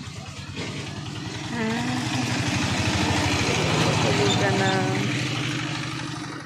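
A motor vehicle engine passing by, growing louder to about four seconds in and then fading, with faint voices in the background.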